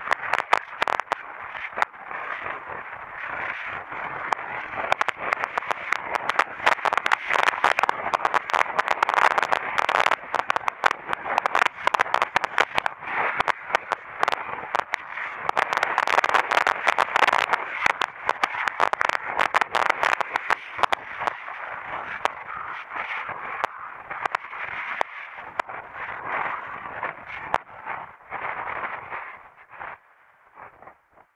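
Rushing wind and road noise on the microphone of a camera riding on a moving bike, broken by frequent crackling clicks.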